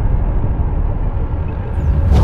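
Deep, loud rumble of a cinematic logo-intro sound effect, the tail of a shattering rock boom, slowly dying away. A brief whoosh comes in near the end.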